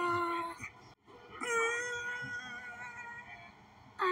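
A sung note from a children's song breaks off about a second in; after a short gap, one long high sung note is held, slowly fading.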